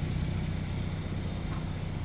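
A car engine idling, a steady low hum.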